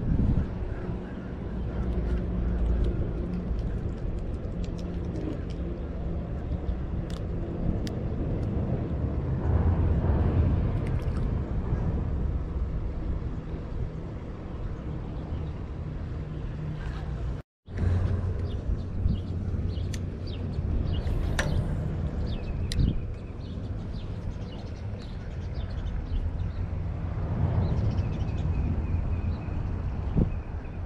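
Steady low engine drone with wind noise on the microphone, and a few small clicks and taps.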